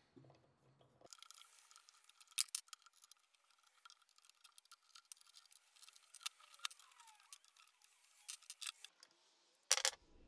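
Faint, scattered clicks and small metallic taps of steel tool-rest parts being handled on a belt grinder's mounting plate, with a sharper knock near the end.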